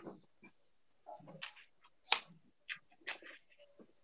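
Faint scattered clicks and small handling noises, a handful of short sharp ticks spread over a few seconds, with no speech.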